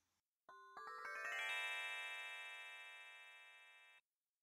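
A short chime flourish used as a transition sound: a quick run of bell-like notes rising in pitch starts about half a second in, then the notes ring on together and fade away.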